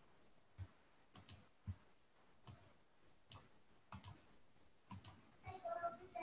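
Computer mouse clicking, faint: about ten sharp clicks at irregular intervals, several in quick pairs. A brief voice sound comes in near the end.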